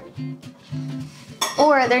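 A metal spoon clinking against a plate, over soft background music with steady low notes. Talking resumes near the end.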